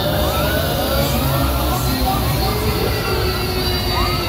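Funfair jumper ride running under load: a loud, steady mechanical rumble with a hiss that comes in at the start. Short rising and falling cries from the riders sound over it.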